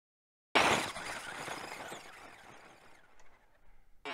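Electric RC truck launching hard on loose dirt: a sudden burst, about half a second in, of motor and spinning tyres spraying dirt and grit. It fades over about three seconds as the truck drives away.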